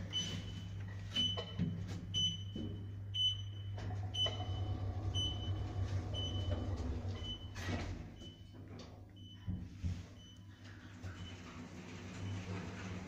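A short, high electronic beep repeating about once a second, from a source nobody present can name, over a low steady hum in an Otis Genesis lift car. About eight seconds in, a brief whoosh fits the lift's sliding doors closing, and the hum then fades.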